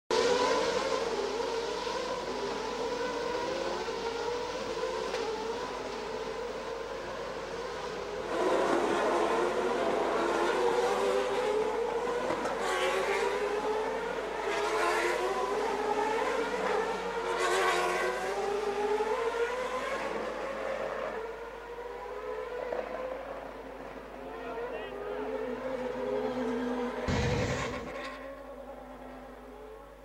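A1GP single-seater race cars' engines revving, several at once, the pitch rising and dropping back again and again as they accelerate and change gear. A short loud burst comes near the end.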